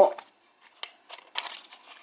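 Origami paper handled between fingertips as a crease is pushed inward: a few short crisp paper clicks with light rustling.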